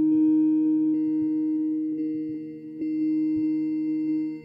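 Ambient drone music played live on hardware synthesizers through delay and reverb effects. A steady low chord is held, with soft bell-like synth note hits, and the upper tones change about every second.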